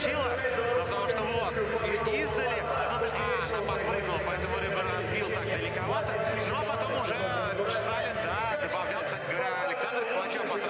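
A man talking over steady arena background noise, mostly speech.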